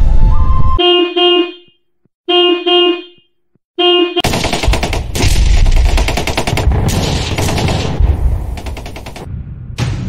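Edited-in sound effects: short horn-like toots in quick pairs with silent gaps between them. From about four seconds in they give way to a loud, fast rattle like machine-gun fire, which dies down over the last few seconds.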